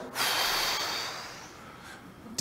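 A man's long, forceful breath out, loudest at the start and fading away over about a second and a half: the full exhale of a Wim Hof breathing round.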